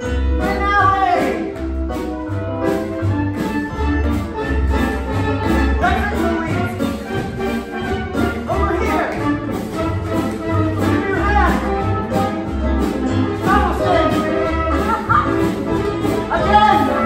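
Theatre pit orchestra playing an upbeat dance number with a steady beat.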